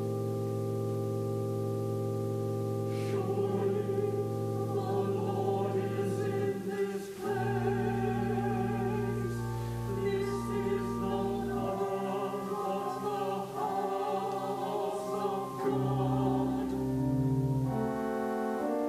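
Organ holding sustained chords that change every few seconds, with singing with vibrato coming in over it about three seconds in.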